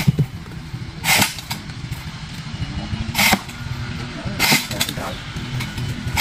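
A small engine running steadily at idle, broken by short hissing swishes every one to two seconds.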